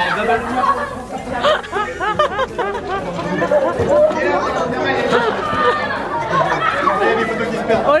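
Several people talking at once: overlapping, excited chatter with no single voice standing out.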